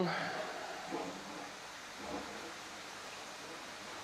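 Steady rushing of water through a koi pond's filtration system, just switched back on after a shutdown.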